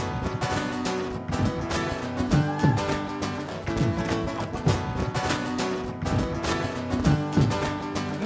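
Acoustic guitar strummed in a steady, driving rhythm, played solo with no voice.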